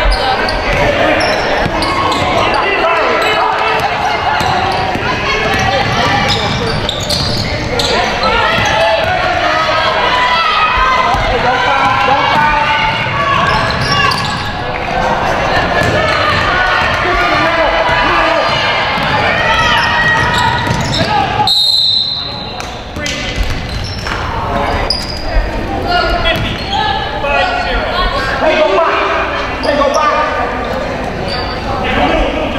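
Basketball game sounds in a gym: a ball dribbling and bouncing on the hardwood court under steady voices of players, coaches and spectators. The sound briefly cuts out about two-thirds of the way through.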